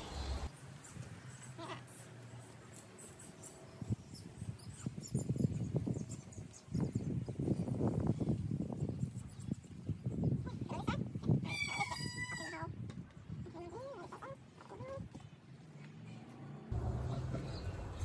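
Quiet rustling and handling of stiff elkhorn fern fronds and garden wire, with a short high-pitched bird call about twelve seconds in.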